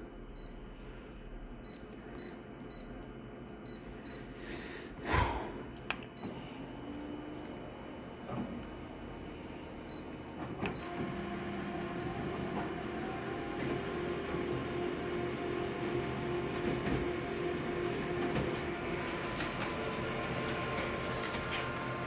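Konica Minolta colour multifunction copier running a full-colour copy job: a low hum, a single knock about five seconds in, then from about eleven seconds in a steady mechanical whir with a held tone, growing gradually louder as the sheet is printed and fed out.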